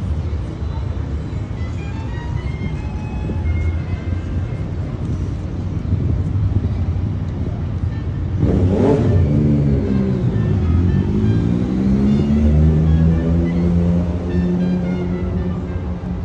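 City street traffic with a steady low rumble. About nine seconds in, a motor vehicle passes close and its engine note rises as it accelerates, then holds steady.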